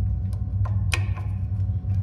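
Adjustable wrench being fitted onto the stem of a refrigeration rack's ball valve: a few small metallic clicks, the strongest about a second in with a short metallic ring, over a steady low machine hum.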